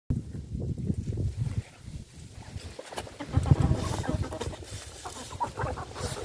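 A flock of chickens clucking while they feed on a pile of fresh-cut grass, the calls coming thicker after the first couple of seconds, over an uneven low rumble.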